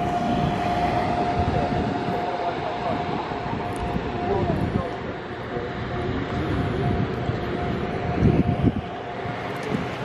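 Steady engine noise with a constant, unchanging whine held throughout, and a few low thumps near the end.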